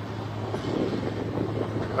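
Steady outdoor background noise: a constant low hum under an even rumble and hiss.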